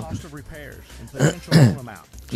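A man laughing briefly and clearing his throat, loudest about one and a half seconds in.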